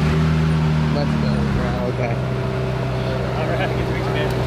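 Ferrari 458's V8 engine running at low revs; its note drops to a lower steady pitch about two seconds in. Voices can be heard in the background.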